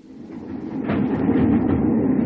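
Steady rumble of a moving train heard from inside a carriage, fading in over about the first second and then holding level.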